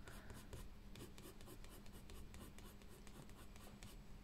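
Faint scratching of a soft, waxy Derwent Drawing coloured pencil making quick, short strokes on paper, laying chocolate brown over black.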